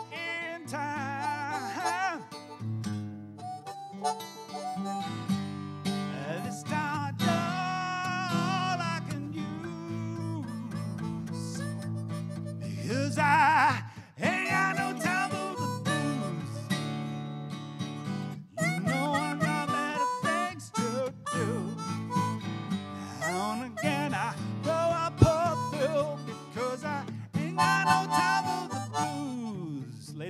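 Harmonica solo with bending, sliding notes over a strummed acoustic guitar.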